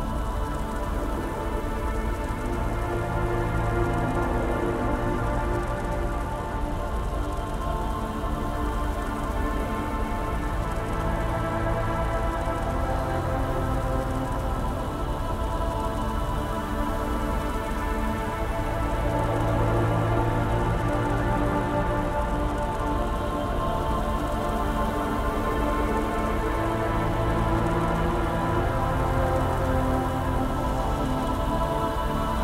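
Dark ambient synth drone music: layered sustained tones with deep low swells that rise and fade twice, over a steady rain-like noise bed of industrial ambience.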